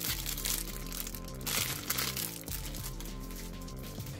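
Background music with a steady bass line, over which the plastic wrap around packs of Pokémon energy cards crinkles twice as they are handled.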